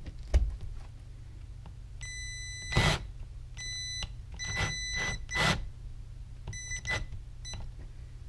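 Cordless drill-driver run in short bursts to drive a 3D-printed plastic drywall anchor into drywall. Its motor gives a steady high whine in four bursts, with sharp crunching knocks between and during them as the anchor's threads bite into the wall.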